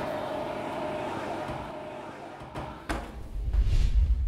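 Oven door being shut after a cast-iron pot goes in: a steady hum from the open oven, then two sharp clicks about two and a half and three seconds in as the door closes, followed by a low rumble that swells near the end.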